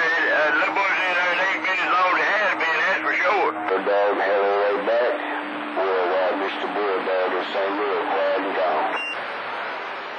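Man's voice coming in over a CB radio on channel 28 skip, rough and hard to make out through the receiver's speaker, with a steady low tone under it in stretches. About nine seconds in the voice drops and only static is left.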